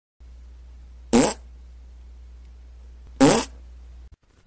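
Two short, buzzy blasts about two seconds apart, each rising in pitch, over a steady low hum.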